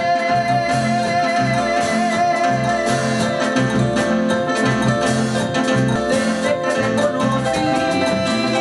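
A live Latin dance band playing an instrumental passage: a long held keyboard melody over a steady, pulsing electric bass line and drum kit.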